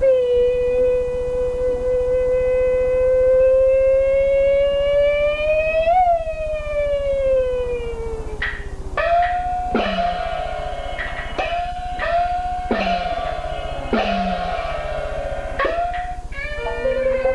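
Peking opera music: one long held note that rises slowly and then glides down over about eight seconds, followed by the percussion section's struck gongs and cymbals at an uneven beat of one or two strikes a second, each strike's pitch falling away.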